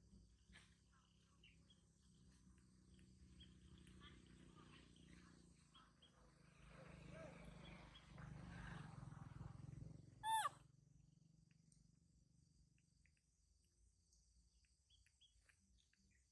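Near-quiet background with a faint, steady high insect hiss, broken about ten seconds in by a single short, high-pitched squeak from a baby macaque.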